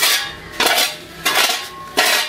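Metal dustpan scraped across a concrete path in short, repeated strokes, about four scrapes in two seconds.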